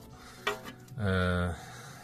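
A man's voice: a brief sound about half a second in, then a drawn-out hesitation vowel held for most of a second.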